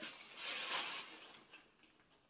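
Tissue paper rustling as a gift is pulled out of its wrapping, dying away about a second and a half in.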